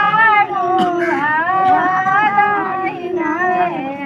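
Women singing a traditional wedding folk song for the sagun ritual, with long held notes that bend up and down and no drum or instrument heard.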